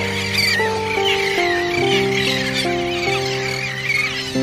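Background music: sustained keyboard-like chords that step to new notes every half second or so, with high warbling, bird-like chirps layered over them.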